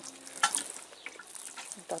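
Water sprinkling from a watering can's rose onto plastic seedling trays, a steady soft hiss with one sharp click about half a second in.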